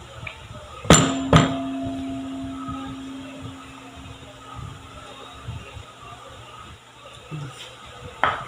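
A measuring cup knocked twice, about half a second apart, against a stainless steel mixing bowl to shake out softened butter. The bowl rings on with a steady metallic tone that slowly fades over the next few seconds.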